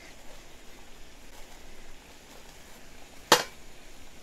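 Water at a rolling boil in a small pot on a portable gas burner, with butterbur leaves being blanched in it, giving a low steady bubbling hiss. A single sharp click sounds about three seconds in.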